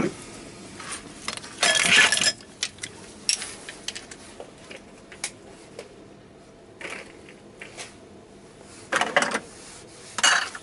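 Metal tools and parts clinking and clattering on a workbench, with a louder burst of clatter about two seconds in, another near the end, and scattered clicks between.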